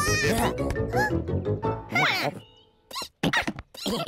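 Cartoon background music with wordless character vocal sounds gliding up and down in pitch. The music stops about halfway through, leaving a few short, separate vocal sounds.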